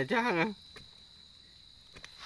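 A faint insect trill held steady at one high pitch, in the background throughout.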